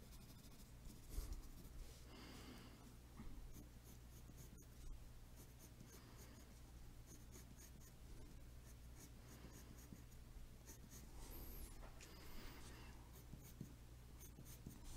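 Faint scratching of a pencil shading on paper, in short strokes that come and go, over a low steady hum.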